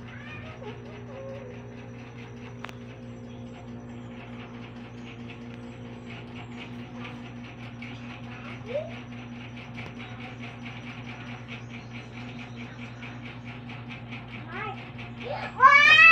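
A toddler's high, sing-song vocalizing near the end: a few loud cries that glide up and down in pitch. Underneath runs a steady low hum with a faint, fast, even pulsing.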